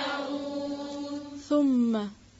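A woman's voice in chanted Quran recitation, holding one long drawn-out note, then a louder second held note about one and a half seconds in that slides slightly down in pitch.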